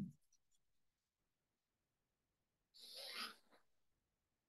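Near silence in a small room, with a few faint clicks at the start and one short, soft rustle about three seconds in, as a person settles into a cross-legged seat on a mat.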